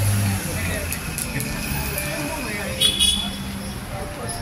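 City street ambience: traffic noise with people's voices in the background, and a brief louder sound about three seconds in.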